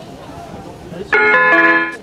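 Multi-note electronic announcement chime from an on-board ceiling loudspeaker, starting about a second in, its notes entering one after another and ringing on together: the gong that comes before the automated stop announcement. Before it there is only low cabin background.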